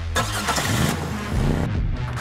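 A car engine started by push button, catching with a burst of noise just after the start, then revving up and down, over background music.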